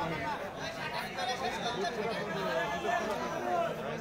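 Spectators' voices chattering, several people talking over one another.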